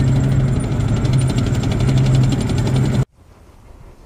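Tracked armoured vehicle (tank) driving: a loud, steady engine hum with fast, even clatter, as from its tracks. It cuts off suddenly about three seconds in, leaving only a faint low background.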